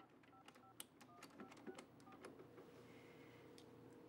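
Payphone keypad being dialed: a quick run of short, faint touch-tone beeps with button clicks, one after another through the first two seconds. A faint steady tone follows over the last second or so.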